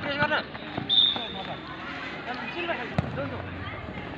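A football kicked on a dirt pitch, with one sharp thud about three seconds in. Players and onlookers shout around it.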